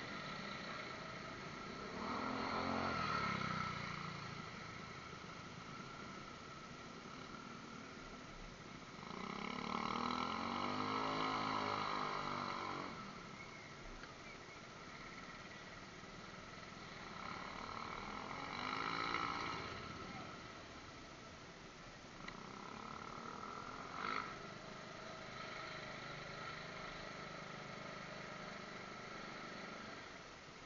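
Motorcycle engine revving up and easing back three times during a slow ride, over a steady background hum, picked up by a cheap helmet-mounted action camera. A short sharp knock comes late on.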